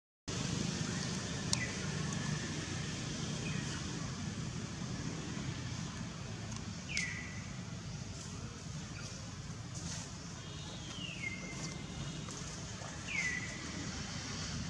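Steady outdoor background noise in a forest with four short, high animal calls, each sweeping downward and then levelling off; the one about seven seconds in is the loudest.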